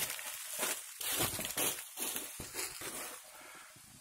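Dry leaf litter crunching and rustling underfoot in irregular steps on a steep slope, dying away near the end.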